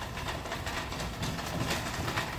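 Wire shopping cart being pushed across a hard store floor: its wheels roll and the metal basket rattles steadily.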